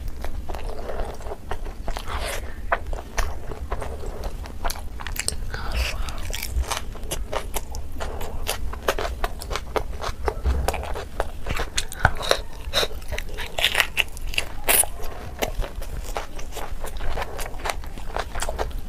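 Close-miked chewing and biting of chicken curry and grilled skewered vegetables. Many quick, irregular wet and crunchy mouth clicks go on without a break.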